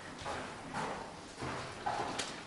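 Faint footsteps and shuffling in a quiet meeting room: a few soft, irregular knocks.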